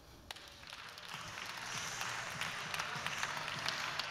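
Audience applauding: starting faint and swelling over the first second or two into steady clapping.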